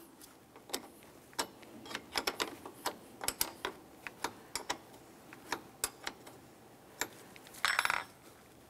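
A wrench tightening the nut on a car battery's negative terminal clamp: a string of sharp, irregular metallic clicks, about two or three a second, then a short rattle near the end.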